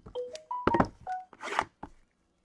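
Cardboard trading-card boxes being handled on a table: several knocks as a box is pulled from the stack and set down, with some rustling. Over the first second, a quick run of about five short beep tones, each at a different pitch.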